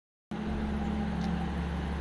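Steady low hum of a running vehicle engine beside a road, starting a moment in after a brief silence.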